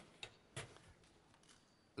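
Near silence: room tone with a few faint clicks in the first second.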